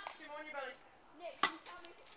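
A single sharp hit of a tennis racket on a ball about one and a half seconds in, followed by a few lighter ticks.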